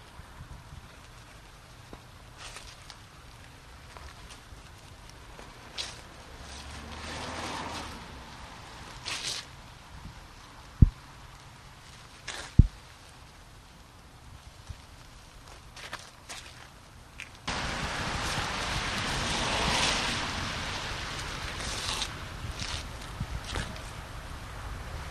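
Sand trickling from a bag onto a driveway's ice, with a few scuffing footsteps on the pavement. Two sharp low thumps come about halfway through, and a louder steady rushing noise starts suddenly about three-quarters of the way in.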